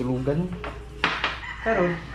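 Dishes and cutlery clattering on a table, with two sharp knocks close together about a second in.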